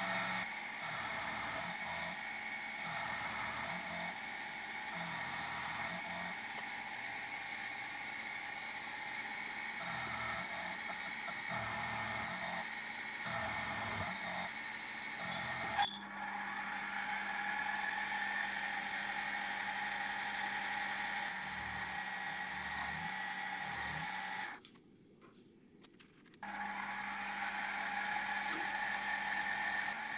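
Mini milling machine running with a steady motor whine as an end mill cuts a metal block, with an uneven rumble of cutting that comes and goes. There is a sharp click about halfway through, and the sound drops out for about two seconds near the end before resuming.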